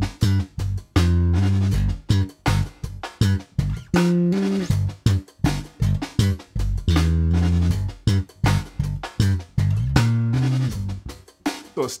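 Slap bass on an electric bass guitar: a funk line of thumb slaps and finger plucks in a paradiddle pattern, with a hammer-on to the flat seventh, over a drum track of hi-hat and snare. The short percussive strikes are broken by a few held low notes.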